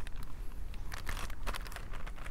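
Faint rustling with a few light, crisp ticks around the middle, from a hardcover picture book being jiggled in the hands.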